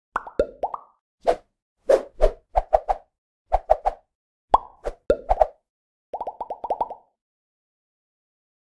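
Cartoon pop sound effects of an animated intro: short plops, each a quick upward blip, in irregular clusters, ending in a fast run of about eight pops about six seconds in.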